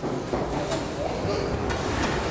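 General classroom bustle: children moving about, with a steady noisy rumble under faint, indistinct voices, starting suddenly.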